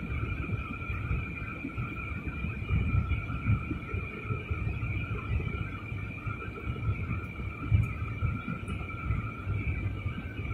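Jet airliner cabin noise during descent: a steady, uneven low rumble with two steady high whining tones held over it.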